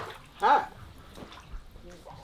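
Water splashing and sloshing as a long-handled landing net is swept through a fish tank. A brief, loud vocal sound from a man comes about half a second in.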